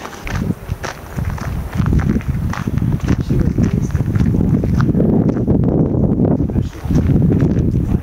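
Footsteps walking on a dirt forest trail strewn with dry leaves, over a loud, rough low rumble.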